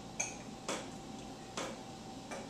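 Three light knocks and clinks of glass on a stone tabletop as a wine bottle is picked up and a wine glass handled to pour.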